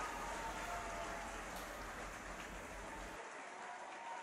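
Faint, steady outdoor ambient noise at a sports ground, an even hiss with no distinct events; the low rumble drops out about three seconds in.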